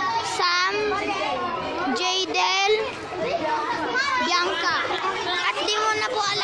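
A group of students chattering and calling out over one another in high-pitched young voices.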